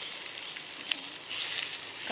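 Rice and mint paste sizzling in a hot stainless steel kadai as they are stirred together with a perforated metal skimmer. There is one sharp click of the spoon against the pan about a second in.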